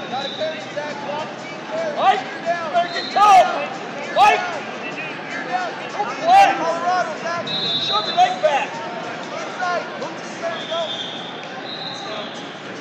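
Busy wrestling tournament hall: babble of voices with repeated squeaky chirps of wrestling shoes on the mats and three sharp smacks a second or two apart. Several short, steady referee whistle blasts sound from other mats, two of them in the second half.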